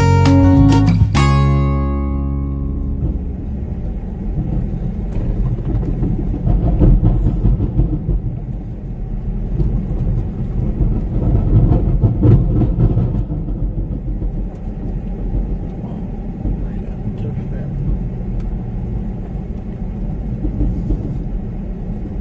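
Strummed acoustic guitar music stops about two seconds in. Then comes a vehicle's steady low rumble of engine and road noise, heard from inside the cabin as it drives slowly.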